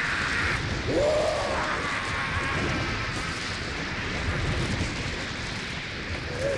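Soundtrack effects of a monster's destruction: a dense, steady rumble like thunder or an eruption, with one short wailing cry about a second in, slowly dying away.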